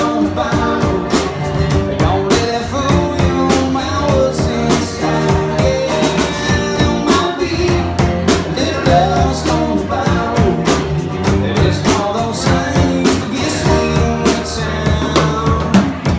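Live band playing: electric bass, amplified acoustic guitar and a drum kit keeping a steady beat.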